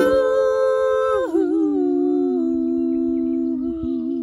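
Two voices, a woman's and a man's, holding long wordless notes in harmony. A higher note ends about a second and a half in, and two lower notes carry on together, wavering slightly.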